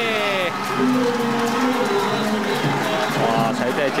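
Ballpark music and crowd cheering after a home run, with held notes that glide in pitch over the crowd noise.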